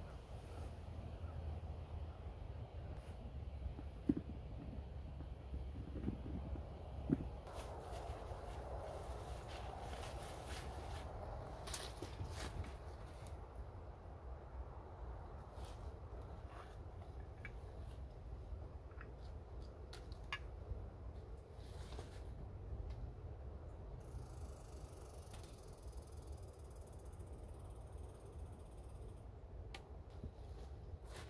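Quiet outdoor ambience: a steady low wind rumble on the microphone, with scattered rustles and a few light knocks.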